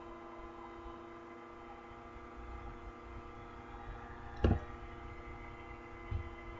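Steady electrical hum in the recording, made of several even tones, with a single sharp knock about four and a half seconds in.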